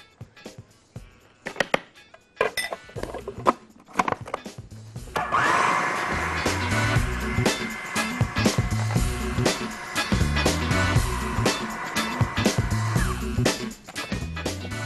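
Electric food processor running for about eight seconds, chopping chicken breast, peppers and a spoonful of flour into a paste; it starts about five seconds in and cuts off near the end. Before it start, a few light knocks of a spoon and bowls.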